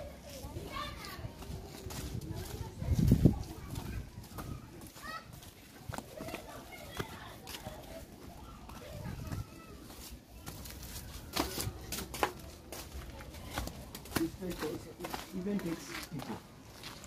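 Outdoor neighbourhood ambience of distant voices and children playing. A low thump comes about three seconds in, and a few sharp clicks come later.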